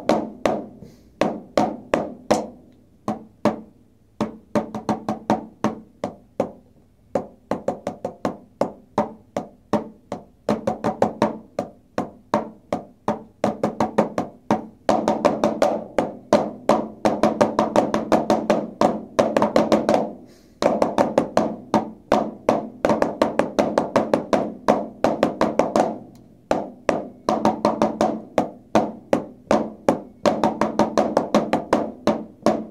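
Two pairs of drumsticks playing a snare drum duet on rubber practice pads: crisp, dry stick strokes in fast interlocking rhythms. The strokes thin out and soften for several seconds near the start, then build into louder, denser passages broken by two short pauses.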